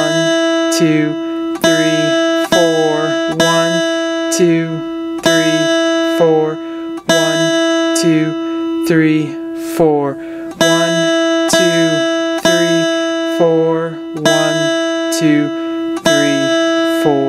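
Guitar's open high E string plucked again and again, each note ringing on for one to several beats, with a voice counting the beats aloud between the plucks. It is a beginner's rhythm-reading exercise in four beats per measure.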